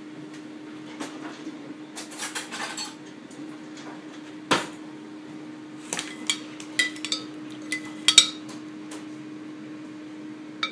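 A metal spoon knocking, clinking and scraping against a ceramic slow-cooker crock as cooking juices are spooned up, with one sharp knock about four and a half seconds in and a run of light ringing clinks in the second half. A steady low hum sits underneath.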